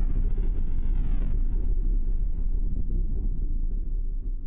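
Low, steady ambient rumble, a dark drone bed, with a faint sweeping whoosh over the first second. It begins to fade near the end.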